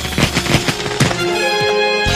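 Cartoon electricity sound effect: a fast run of sharp crackling zaps as a lightning blast is fired, giving way about a second in to a held orchestral chord.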